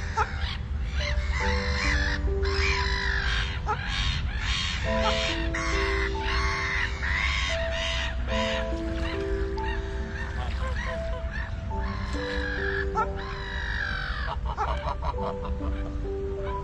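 Domestic geese calling over and over, mixed with slow, soft music of long held notes and a steady low rumble underneath.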